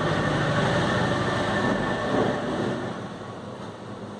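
A vehicle passing, heard as a rushing, rumbling noise that swells and then fades away after about three seconds.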